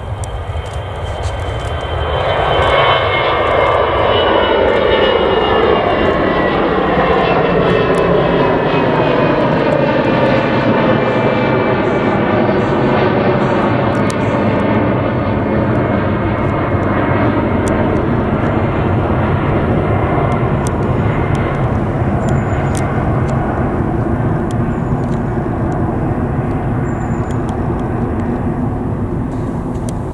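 Airbus A319 jet airliner taking off and climbing out at takeoff thrust. The engine roar swells to full loudness about two seconds in. Several whining tones slide down in pitch over the next ten seconds or so as the jet passes, then the roar holds steady as it climbs away.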